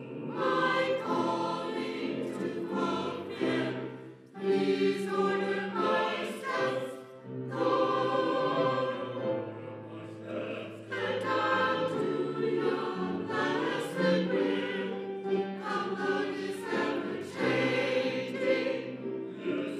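Church choir singing, sustained sung phrases with brief breaks between them about four and seven seconds in.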